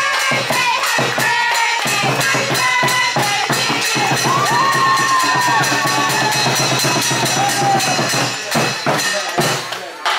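Lion dance percussion: hand cymbals and drum struck in a fast, steady beat, with a crowd clapping and cheering over it. The beat breaks off just before the end.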